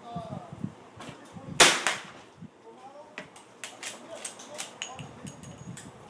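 A single loud shot from a lever-action .357 Magnum saddle rifle about a second and a half in, with a short echo, then several fainter sharp cracks over the next few seconds.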